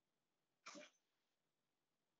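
Near silence, broken once, about two-thirds of a second in, by a short, faint breath from a person.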